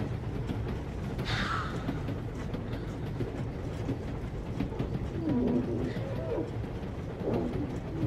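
Steady low rumble of a moving train carriage. It is joined by a brief breathy sweep about a second in and by a few short pitched sounds in the second half.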